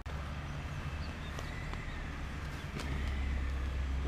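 A steady low hum that grows a little stronger about three seconds in, with a few faint clicks over it.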